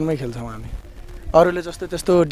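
Speech: a man talking in an interview, with a short break about a second in.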